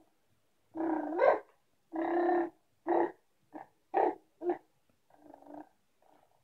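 A baby's voice: a string of about seven short pitched babbles. One near the start slides up in pitch and is the loudest.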